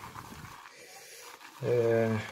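Shaving brush whipping soap lather around a ceramic shaving bowl: a faint, steady wet swishing. Near the end a man's drawn-out voiced hesitation sound comes in.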